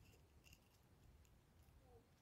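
Near silence: faint outdoor ambience with a few faint, short ticks.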